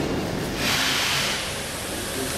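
A rushing hiss that swells about half a second in and fades after about a second, over steady background room noise.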